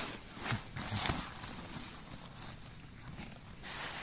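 Soft rustling and scuffing of tent nylon and a sleeping mat as a person shifts while sitting in a tent doorway, in a few short bouts with a longer one near the end.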